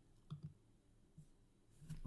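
Near silence broken by three or four faint computer mouse clicks.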